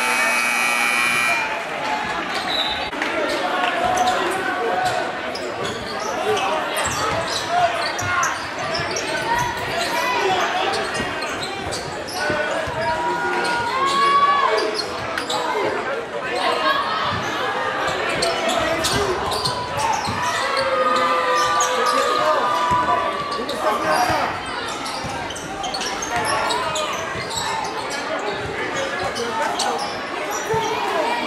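A basketball being dribbled on a hardwood gym floor, repeated bounces over the chatter of a crowd echoing in a large gym. A brief steady tone sounds at the very start.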